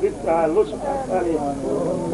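Men's voices chanting a repetitive Arabic religious invocation, a drawn-out melodic recitation that carries on without a break.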